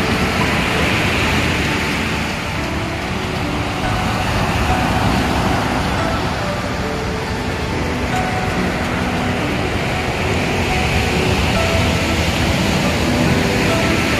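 Ocean surf breaking on a sandy beach: a steady wash of noise that swells and eases every few seconds, with faint music underneath.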